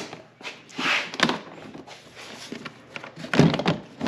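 Plastic body panel of a snowmobile being unlatched and pulled off by hand: rustling clicks and a sharp snap of the plastic about a second in, then a heavier thunk about three and a half seconds in.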